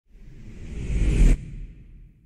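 A whoosh sound effect that swells for just over a second and cuts off sharply, leaving a low rumbling tail that fades away.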